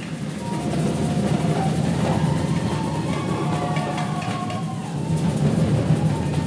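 Live percussion ensemble playing a busy, steady drum groove in the samba and drum-and-bass style, with a few faint sustained melodic notes over it.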